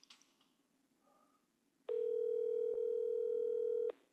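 Telephone ringback tone of an outgoing call that has not yet been answered, played through a mobile phone's speaker held up to the microphone: one steady ring of about two seconds starting about halfway in.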